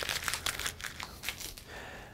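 Light, rapid crinkling and rustling as a hand presses and moves on a thin stainless steel sheet: handling noise of the panel and fingertips.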